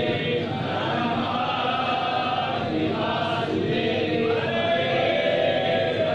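A group of voices chanting the aarti hymn together, a steady unbroken devotional chant.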